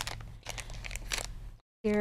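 Soft handling noises from a small plastic ink pad being set down and slid over card stock: a few light taps and rustles over a faint steady low hum.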